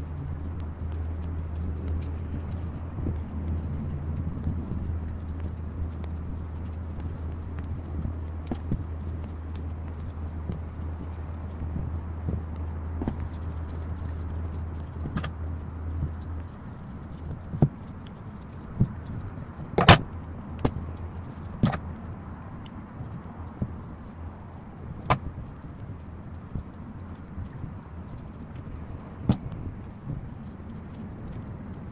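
Hands handling crochet work and stuffing fiberfill into it, giving faint rustling and scattered small clicks and taps, the loudest about two-thirds of the way through. A steady low hum underneath stops suddenly a little past halfway.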